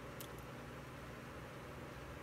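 Faint steady hiss of a quiet room, with one soft click a fraction of a second in: a small eating sound as a forkful of food goes into the mouth.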